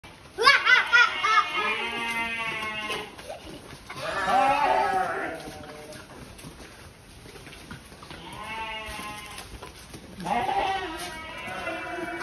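Sheep bleating: four long, wavering bleats, the first and loudest starting about half a second in.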